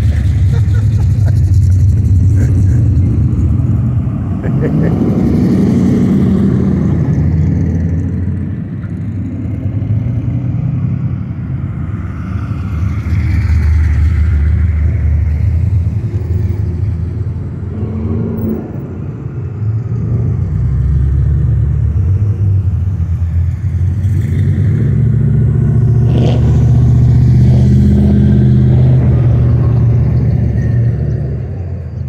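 Loud engines of modified street cars on a cruise, idling and revving through their exhausts. A deep rumble swells and fades every few seconds as cars rev and pass.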